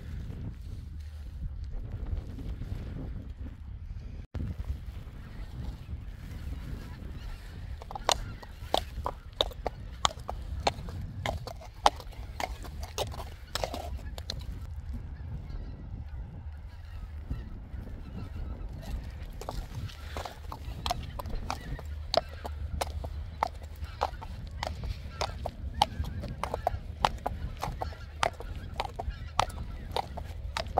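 Birds calling in many short, sharp calls, starting about eight seconds in and continuing at irregular intervals, over a steady low rumble.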